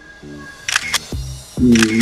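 Soft background music, a simple melody of short held notes. Over it come a few sharp click sound effects from an on-screen subscribe-button animation, a cluster about two-thirds of a second in and another near the end, where a man's voice also begins.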